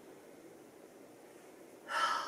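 Quiet room tone while a woman pauses mid-sentence, then near the end a short, audible intake of breath as she gets ready to speak again.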